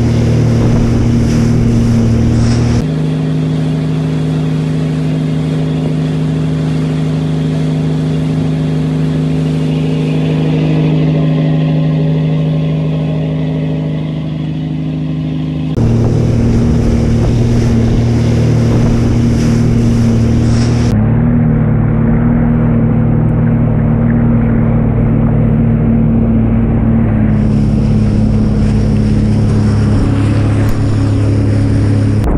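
Boat engine running at a steady drone over rushing wake water and wind on the microphone. The tone and mix change suddenly a few times.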